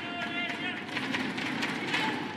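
Badminton players' court shoes squeaking on the court mat in quick, repeated chirps, with sharp racket hits on the shuttlecock and arena crowd noise behind.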